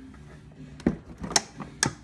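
Three sharp knocks, roughly half a second apart, over a faint low steady hum.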